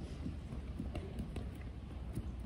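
Low wind rumble on the microphone with a few faint soft taps, as people walk and set down medicine balls on artificial turf.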